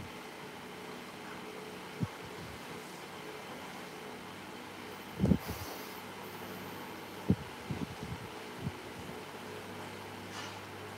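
Steady low background hum, broken by a few short, soft low thumps, the loudest about five seconds in and a small cluster near the end, as fingers press and shape soft clay.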